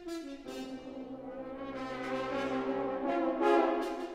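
A French horn choir playing: about half a second in the ensemble moves onto a long held chord of many horns that swells and is loudest near the end.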